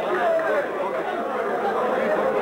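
Many people talking at once around a crowded table: a steady hubbub of overlapping voices, with no single speaker standing out.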